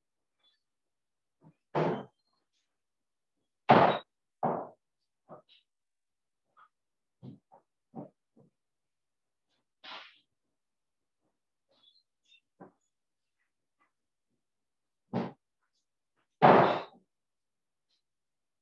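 Scattered knocks and clatters of kitchen containers and utensils being handled while coleslaw is seasoned, loudest twice, about four seconds in and near the end. The sound cuts to silence between knocks, as video-call audio does.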